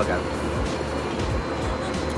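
Background music over a steady low rumble of background noise.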